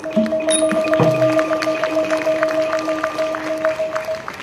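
Thai classical ensemble music: a long held note sounds over a quick, even run of light percussion strikes.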